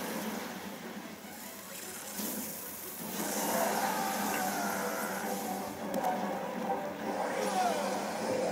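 Soundtrack of an animated fight: background music mixed with battle sound effects, with a louder rushing noise that starts about three seconds in.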